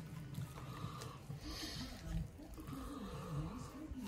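Faint, wordless low sounds from a man's voice, like grunting under effort, while gloved fingers work raw chicken skin loose from the breast, with a soft wet rustle of skin and flesh about a second and a half in.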